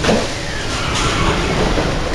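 Sliding passenger doors of an SMRT C151 train opening at a station: a sudden loud start with a brief falling tone, then the rush of the doors sliding apart over steady train noise.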